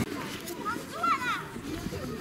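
Children's voices outdoors, with one high-pitched child's call rising and falling about a second in, over steady outdoor background noise.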